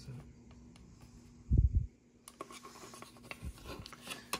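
Plastic model car parts handled in the hands, with one dull knock about a second and a half in, then light scratching and clicking of plastic against skin and fingernails.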